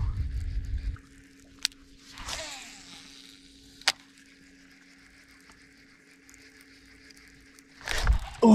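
Wind rumbling on the microphone for about the first second. Then a faint steady hum from a bow-mounted trolling motor, with two sharp clicks and a brief swish of a spinning rod and reel being cast from the boat.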